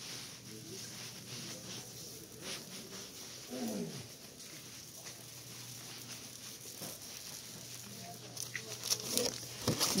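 Quiet store background: a steady low hum with faint scattered taps and rattles, and a brief distant voice about four seconds in.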